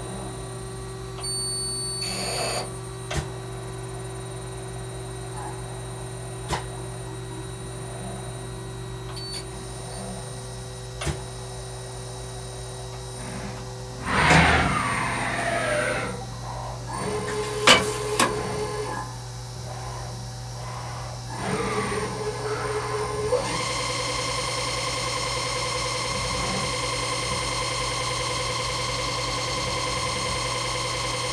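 Ganesh Cyclone 32-NCY CNC Swiss-type lathe running through a cycle. A steady hum carries a few sharp clicks, then from about halfway in motor whines sweep up and down in pitch as the axes move. About three-quarters of the way in it settles into a steady whine.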